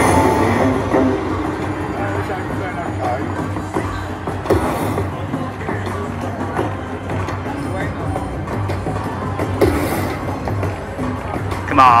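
A video slot machine's bonus-round music and jingles play during a free-spins bonus, over casino crowd chatter.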